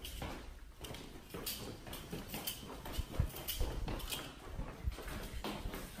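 Footsteps of a person walking, with knocks and rustle from a hand-held camera being carried.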